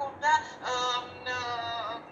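A single voice singing or chanting two held notes, the second bending in pitch as it ends, heard through a laptop speaker over a video call.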